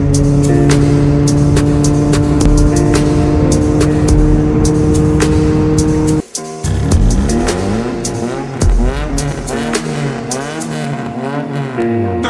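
Music with a steady beat, then, after a brief drop about six seconds in, a car engine revving up and down repeatedly over the music.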